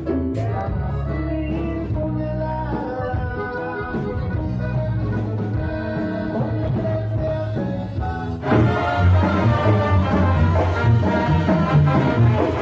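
Live Latin band music with a singer, played loud through a club's PA speakers. About eight and a half seconds in it jumps abruptly to a louder, fuller passage.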